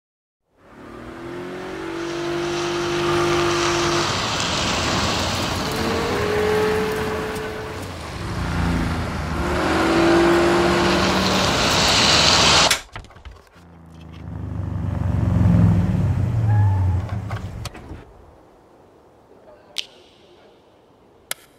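Car engine revving during a burnout, with the loud hiss of spinning tyres. It stops abruptly about two-thirds of the way through, then a lower engine note swells and fades away, followed by a couple of faint clicks.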